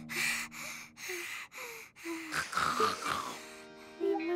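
A young girl's voice panting hard: four quick, loud breaths about half a second apart, then a few softer breaths trailing off. This is the startled panting of waking from a nightmare. Soft background music plays underneath.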